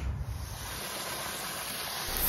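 Water pouring from a hose into a plastic pond basin, a steady splashing.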